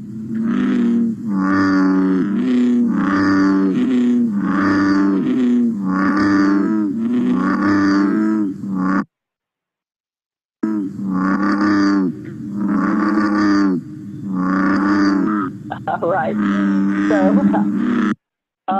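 Recorded American bullfrog calling: a long run of deep, booming notes, about one a second, the bottle-blowing 'jug-o-rum' call. The calls break off for about a second and a half midway, then carry on.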